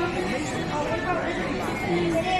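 Voices talking and chattering over one another in a busy indoor public space.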